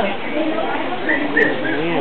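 Indistinct chatter of several people's voices, with a few short high bird chirps about a second in.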